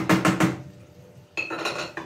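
Wooden spoon stirring in a stainless steel pot, knocking and scraping against its sides in quick strokes, about eight a second, for the first half second. Near the end, a short ringing metallic clatter of kitchenware.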